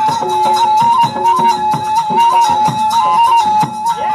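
Rajasthani folk music for the Kachchhi Ghodi dance: a wind instrument holds a high, near-steady melody that steps briefly up and down, over an even drum beat with jingling percussion.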